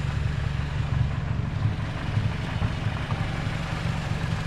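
Car engine idling with a steady low rumble.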